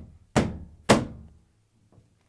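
A washer's top panel clunking twice, about half a second apart, as it is slid forward and locks onto the cabinet; each clunk has a short ringing tail.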